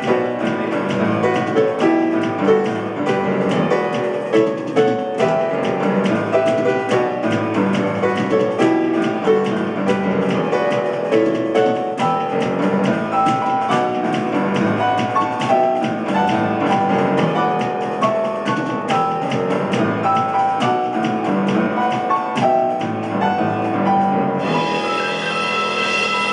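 Solo grand piano played fast and forcefully, with dense struck chords and runs. About 24 seconds in the playing shifts to ringing high notes that are held.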